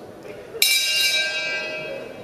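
Boxing ring bell struck about half a second in to start round two; its bright metallic ring fades away over the next second or so.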